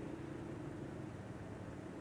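A low engine hum that fades away over the two seconds, above a steady outdoor rumble.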